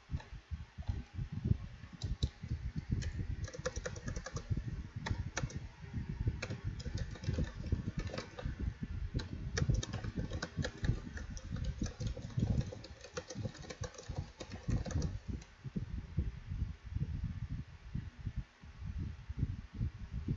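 Computer keyboard typing in quick runs of keystroke clicks, which stop a few seconds before the end. A low, irregular thumping runs underneath throughout.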